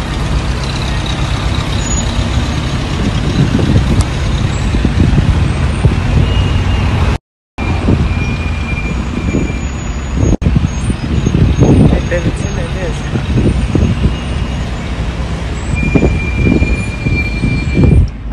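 Wind buffeting a phone microphone held out of a car's open sunroof, with vehicle and road noise underneath. The sound cuts out completely for a moment about seven seconds in.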